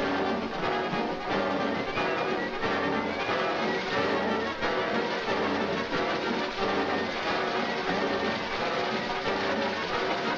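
Orchestral cartoon score playing continuously, with brass among the instruments.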